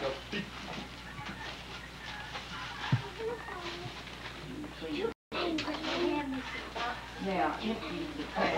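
Indistinct family chatter with paper rustling and tearing as a wrapped present is opened, and a sharp click about three seconds in. The sound cuts out completely for an instant a little after five seconds: a dropout in the old videotape.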